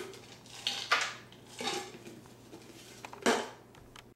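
Mixed nuts shaken from a canister and clattering into a metal baking pan, in several short bursts over the first two seconds. A sharper knock follows a little over three seconds in as the canister is set down on a tile counter.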